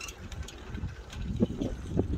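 Low, steady rumble of a chairlift ride: wind on the microphone and the lift's cable running, with a brief faint voice sound about one and a half seconds in.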